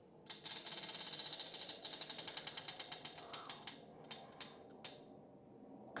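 Prize wheel spinning, its pointer ticking against the pegs: fast clicking at first that slows and spreads out, ending in a few single ticks as the wheel comes to rest about five seconds in.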